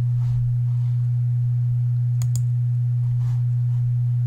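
A steady low hum, one unchanging tone, in the recording, with two faint clicks a little past halfway.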